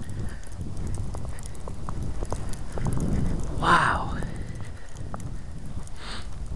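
Footsteps crunching through fresh snow at a walking pace, with one short vocal sound a little past the middle.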